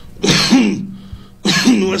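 A man clearing his throat with short coughs, once about a quarter second in and again near the end, just before he speaks.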